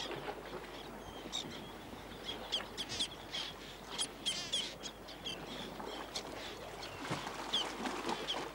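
Birds calling: many short, high chirps through a steady background hiss, with a warbling trill about four seconds in.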